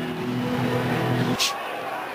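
Football stadium crowd noise as heard on a TV broadcast. A steady held tone runs over it and stops abruptly about a second and a half in, followed by a brief hiss.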